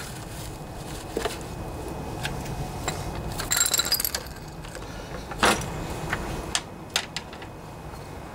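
Light metallic clinks and rattles from a steel push-mower deck and its cables as the mower is handled and tipped back onto its wheels, with a brief jingle about halfway through and a single louder knock a little later.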